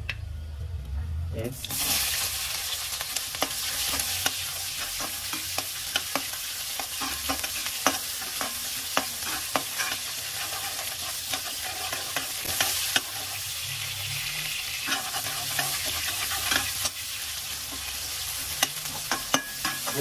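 Sliced onions and cumin seeds frying in hot oil in a metal kadai, sizzling, while a long metal spatula stirs them and scrapes and clicks against the pan. The sizzle starts suddenly about a second and a half in.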